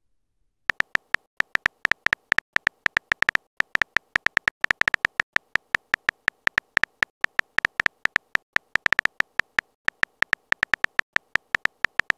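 Smartphone virtual-keyboard typing sound effect: a quick run of short, sharp tapping clicks, one per letter typed, roughly eight a second and unevenly spaced, beginning under a second in.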